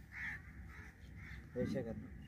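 A bird calling faintly once, shortly after the start, then a brief faint voice near the end.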